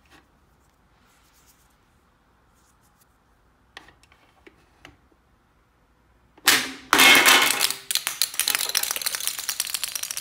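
Plastic swords clicking into the slots of a Minions pop-up barrel game. About six and a half seconds in, the spring fires with a sudden loud snap and launches a Minion figure. The plastic figure then clatters and rolls across a tiled floor in a rapid run of clicks.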